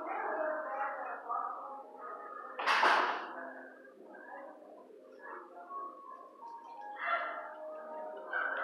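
Music playing in a kennel room, with one loud, sharp dog bark about three seconds in.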